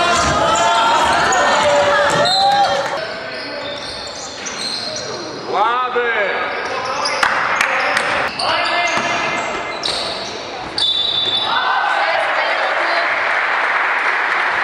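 Indoor basketball game sound in a large gym hall: a ball bouncing on the court, short high sneaker squeaks, and players' and spectators' voices, the sound jumping abruptly several times.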